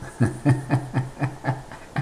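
An elderly man laughing: a steady run of short chuckles, about four a second.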